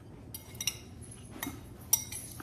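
A metal fork clicking and scraping against a ceramic bowl, a few light clinks with a sharper one near the end.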